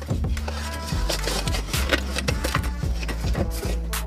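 Sticky lint roller rolled over a fabric mesh vent, its tape crackling in rapid, irregular clicks as it picks up hairs, over background music.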